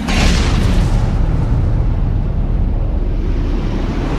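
Loud, deep rumbling sound effect from an advertisement soundtrack, with a hissing swell in the first second over a steady low rumble.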